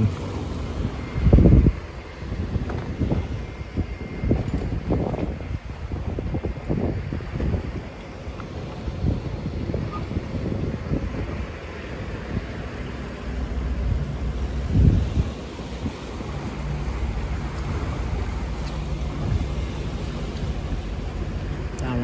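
Wind buffeting the microphone in gusts, the strongest about a second and a half in, around five seconds and near fifteen seconds, over the low hum of a Suzuki 150 outboard motor at trolling speed and the wash of the sea.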